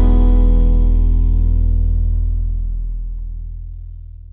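The band's last chord ringing on and fading steadily after the final strikes. The upper notes die away first and a deep bass note lasts longest.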